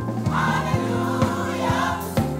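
Gospel choir singing, with a steady beat about twice a second under it.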